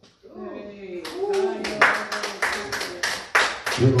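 Hands clapping in a steady rhythm, about five claps a second, starting about a second in, with voices underneath.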